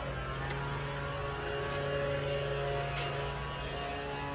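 A steady machine hum: a low, even drone with several fixed higher tones, running without change.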